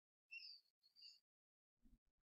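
Near silence, broken by two faint, short high-pitched chirps about half a second apart and a soft low thump near the end.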